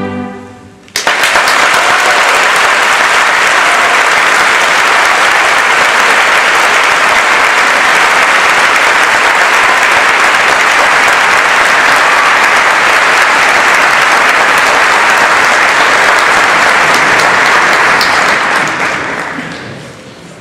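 The last chord of a choir and orchestra dies away, then audience applause starts suddenly about a second in, holds steady, and fades out near the end.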